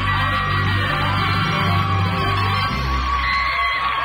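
Background music with held bass notes, under an audience cheering and yelling as a finalist's name is called.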